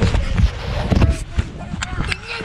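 Thumps, knocks and rubbing on a handheld action camera, with sharp clicks and voices mixed in.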